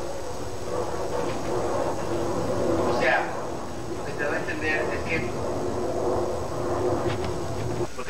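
Indistinct talking of several people in a room, with short bursts of voices about three seconds in and again around four to five seconds, over a steady background hiss.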